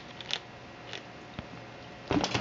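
Baby squirrel gnawing a nut: a few faint, sharp crunching clicks, about three in two seconds.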